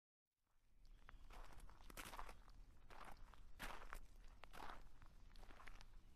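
Near silence: faint room tone with soft, irregular clicks and rustles.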